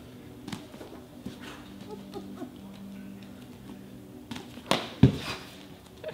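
A kick striking a small object balanced on a person's head: two quick thumps near the end, the second louder and sharper.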